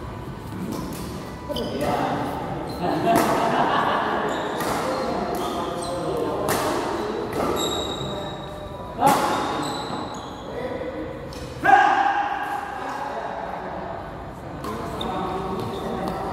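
Badminton rally in a large echoing hall: rackets striking the shuttlecock in a string of sharp hits, the two loudest a little past the middle, with shoes squeaking on the court and players' voices.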